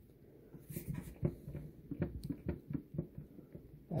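Handling noise: soft, irregular knocks and rubbing as a handheld camera is moved close over a DJ table and controller, with a few light clicks.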